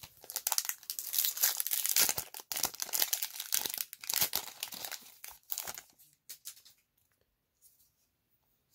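Foil wrapper of a Magic: The Gathering Kaldheim draft booster pack being torn open and crinkled, a dense crackle that stops about six seconds in, followed by a few faint clicks.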